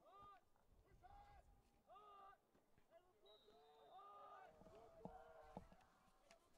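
Near silence, with faint, distant shouted calls from lacrosse players on the field, a short call about every second.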